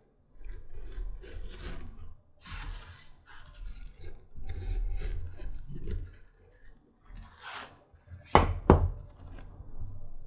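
Round knife cutting the edge of glued leather panels against a cutting board: a series of short scraping strokes. Two sharp knocks come about eight and a half seconds in.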